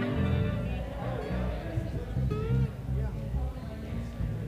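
Guitar being played while people talk in the background.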